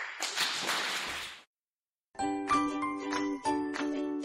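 Audience applause for about a second and a half after a speaker's share, cut off abruptly. After a brief silence, the podcast's outro music begins: a melody of struck notes that ring on.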